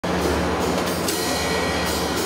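Free-improvised jazz in progress: a steady low drone of bowed cello and double bass under a high hiss, before the saxophone enters.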